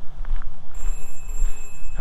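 A telephone ringing, heard as steady high tones that begin just before the middle, over a constant low rumble.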